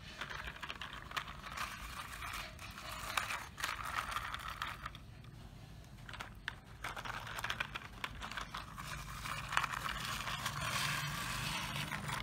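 Small plastic toy trucks pushed by hand, their plastic wheels scraping and crunching over gravel and the plastic trailer deck in several stretches of gritty rolling, with small clicks of plastic.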